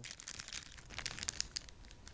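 Plastic blind-bag toy packaging crinkling as it is handled: a quick string of small crackles.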